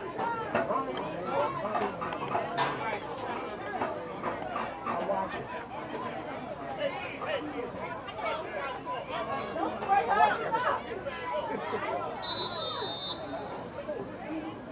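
Several people talking at once in sideline chatter, with a single referee's whistle blast of about a second near the end.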